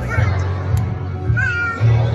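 Young children singing in a group over a backing track with a steady pulsing bass. A single high voice glides up and down briefly about a second and a half in.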